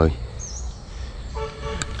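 A short, steady, horn-like beep lasting about half a second near the end, with a small click as it stops. A bird repeats a short high chirp.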